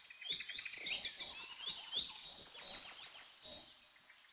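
Small birds chirping: many short, high calls overlapping, busiest through the middle with a quick run of chirps a little past halfway.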